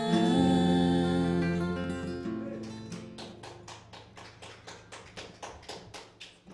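Last sung chord of a bluegrass gospel song, voices over acoustic guitars, held and fading out over about three seconds. A steady run of light taps follows, about three a second.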